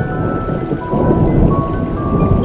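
Steady rain falling, with a slow melody of ringing, chime-like music notes over it. About a second in, a low rumble swells up beneath the rain.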